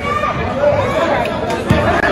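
Spectators chattering and calling out in a school gym during a basketball game, with one thump of the dribbled ball near the end.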